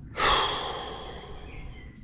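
A man's long sigh: a sudden breath out that fades away over about a second and a half.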